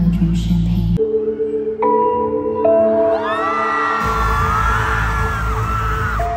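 Concert music over an arena sound system: a deep bass drone that cuts off about a second in, then held synth notes. From about three seconds in, a large crowd of fans screams and cheers over the music as the bass comes back in.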